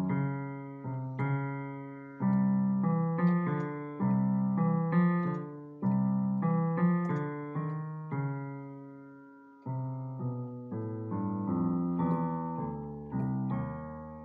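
Solo piano played slowly: chords struck every second or so and left to ring out. Past the middle one chord fades away for over a second before a softer passage of quicker single notes.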